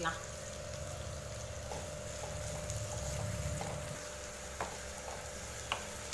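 Sliced onions and garlic cloves frying in oil in a pan, a steady, gentle sizzle over a low rumble, with a couple of light clicks in the second half.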